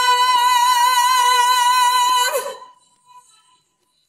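A female singer holding a high sung note on B4 with an even vibrato for a little over two seconds. The note then stops, and a faint tail dies away to silence.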